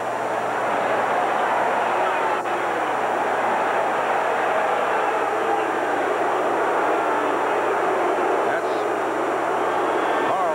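Stadium crowd noise, a dense din of many voices that swells over the first second and then holds steady.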